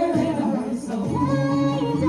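A vocal group of men and women singing a Christmas song together in harmony, holding long notes, with a change of chord about a second in.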